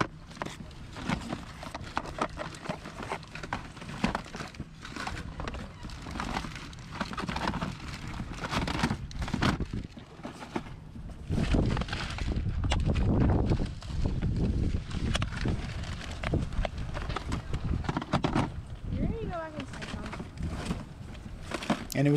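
Plastic Sega Genesis game cases clacking and knocking against each other as they are flipped through and pulled from a plastic bin, in a run of irregular clicks. Wind rumbles on the microphone, strongest in the middle of the stretch.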